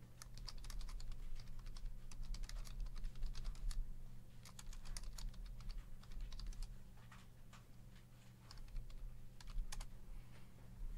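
Typing on a computer keyboard: a quick, irregular run of key clicks that thins out for a moment about seven seconds in, then picks up again, over a steady low electrical hum.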